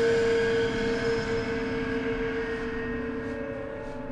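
Sustained, ominous drone from the background score: several steady held tones at once, loudest at the start and slowly fading.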